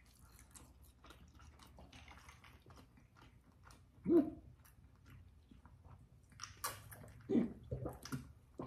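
Close-miked mouth sounds of drinking soda: soft wet clicks and swallows, with a short throaty gulp about four seconds in and a few louder clicks and swallows near the end.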